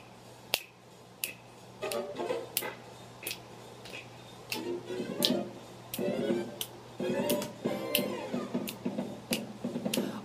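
Fingers snapping in a steady beat, about one and a half snaps a second, keeping time with a soft melody.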